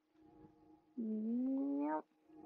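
A woman's voice saying a drawn-out, rising "yep" for about a second, starting halfway through, over faint steady background music tones.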